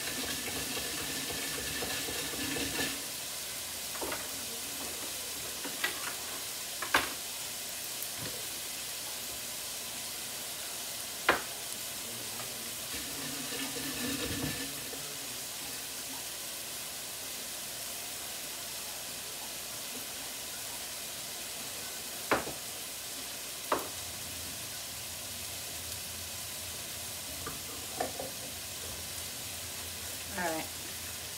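Chicken and garlic frying in a sauté pan on a gas burner, a steady sizzle with a few sharp pops standing out through it.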